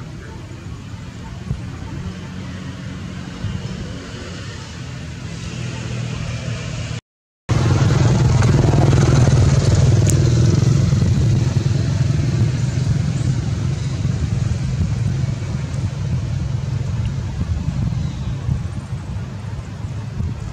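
Low, steady engine rumble, like a motor vehicle running. It cuts out for a moment about seven seconds in and comes back louder.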